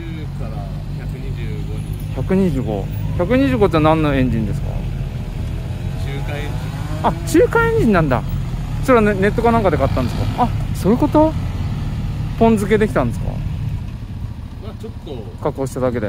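A motorcycle engine idling steadily close by, with voices talking over it now and then.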